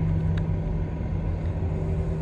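Steady low rumble of running machinery in the background, with a single faint click about half a second in as a calculator key is pressed.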